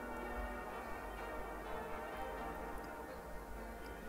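Quiet background music of sustained, overlapping notes.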